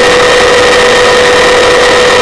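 Helicopter heard from on board: a loud, steady rush of rotor and engine noise with a steady whine running through it.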